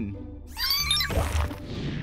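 A short, high-pitched cartoon sound about half a second in, followed by a hissing whoosh, over soft background music.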